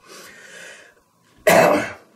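A man coughs once, a single sharp burst about one and a half seconds in, after a faint breath.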